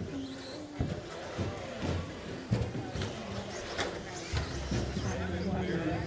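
Racing RC stock trucks in a large indoor hall: irregular sharp knocks and clacks as the trucks land and hit the track, over indistinct voices and hum echoing in the room.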